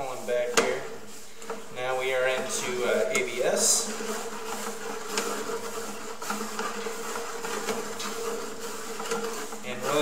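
Steady electrical buzz on one tone, the constant hum in the sewer inspection camera's audio feed, heard while the camera is pulled back through the line. A sharp click comes about half a second in.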